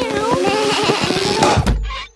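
Cartoon background music with children's voices as a line of children pulls a stuck child from a tyre swing, ending in a low thump near the end as she pops free and lands.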